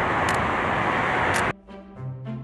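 Steady noise of road traffic going by, cut off abruptly about a second and a half in by music with long held notes.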